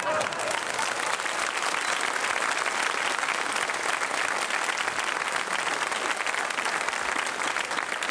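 Studio audience applauding: many hands clapping at a steady level.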